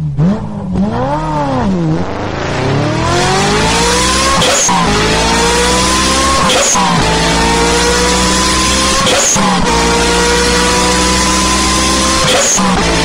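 Car engine revving up and down a few times, then accelerating hard through the gears: the pitch climbs steadily, then drops sharply at each of three gear changes.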